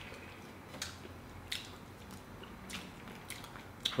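Quiet eating sounds: a handful of faint, short clicks from plastic forks on plastic cake containers, with chewing of soft cake.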